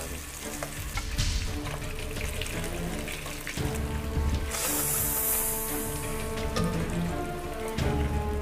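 Chicken sizzling in a sticky black-sugar glaze in a wok, being stirred with a wooden spatula, with scattered clicks of the spatula against the pan. The hiss grows louder for about a second midway.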